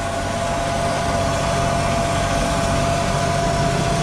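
Claas tractor engine running steadily under load, heard from inside the cab while pulling a seed drill across a ploughed field, with a thin steady whine over the engine note.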